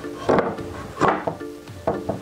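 Two notched 2x4 boards knocking together as a half-lap cross joint is set into place, three short wooden knocks over background music.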